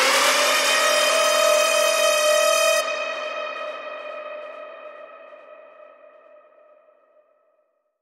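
The closing synthesizer note of an electronic dance track, with no beat or bass under it. One held note swoops up in pitch at the start, loses its bright top about three seconds in, then fades out.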